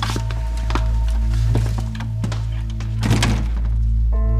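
Background music of sustained low chords, over which a few light knocks sound and a door thuds shut about three seconds in.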